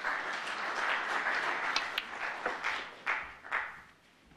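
Audience applauding a pot at the snooker table. The clapping swells at once, then thins to a few last claps and fades out near the end.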